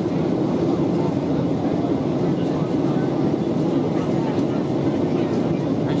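Steady cabin noise of a Boeing 737-800 on approach, heard from inside the cabin over the wing: its CFM56-7B engines and the rush of air past the fuselage, an even low drone.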